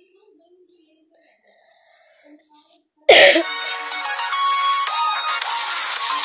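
Very faint for the first three seconds, then loud electronic dance music starts abruptly about halfway through and keeps going: the intro of a YouTube video played on the phone.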